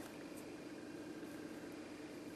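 Quiet room tone: a faint, steady hiss with a low hum and no distinct sounds.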